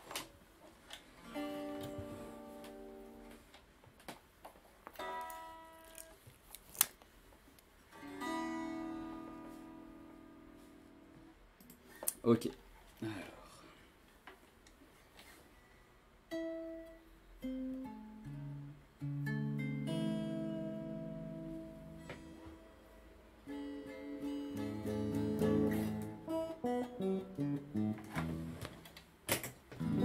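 Guitar being played: chords struck and left to ring and fade, with gaps and a few sharp clicks between them. The playing turns busier with more notes in the second half.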